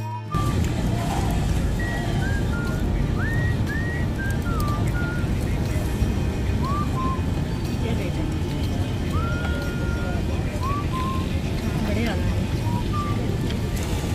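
Busy open-air restaurant ambience: a steady din of crowd chatter and traffic hum, dotted with short, high whistled chirps that slide up and down.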